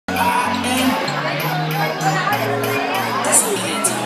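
Dance music played over a PA loudspeaker, with a bass line of held notes changing every second or so under a regular beat, and the chatter of a seated crowd.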